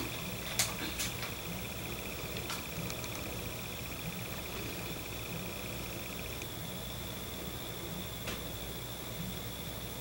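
Quiet room tone: steady hiss and low hum with a faint high whine that stops about six and a half seconds in, and a few light clicks near the start.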